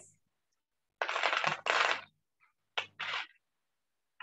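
A few short bursts of rattling and rustling, like small toy pieces being handled and shuffled in a box, cut off abruptly between bursts by video-call audio.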